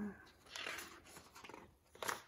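Paper pages of a hardback picture book being turned by hand, giving soft rustles about half a second in and a sharper page sound at the end. A short falling vocal sound trails off at the very start.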